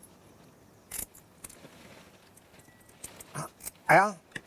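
Kitchen scissors snipping the small fins off a whole sea bream: one sharp snip about a second in, then a few fainter clicks. A brief vocal sound at the very end.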